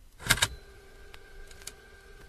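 Vinyl record playing on a turntable: a loud pop just after the start, then a few faint crackle ticks under a steady held tone.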